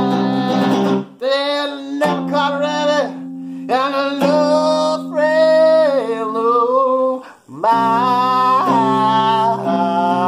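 A homemade electric cigar box guitar played in a rock and roll song, its held low notes under a man singing long, sliding vocal lines that break off briefly twice.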